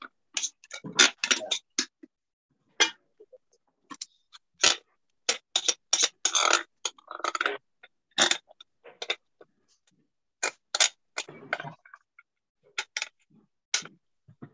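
Irregular clicks, taps and rustles of hands at work with kitchen things, in short choppy bursts with dead gaps between, as heard through a video call.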